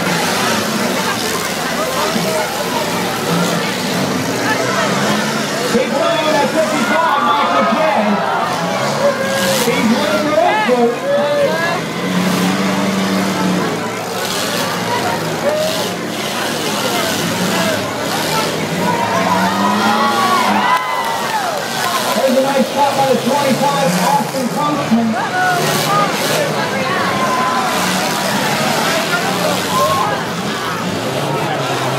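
Demolition derby compact cars' engines running and revving in rising and falling sweeps, mixed with crowd chatter, with a few sharp knocks of cars hitting each other.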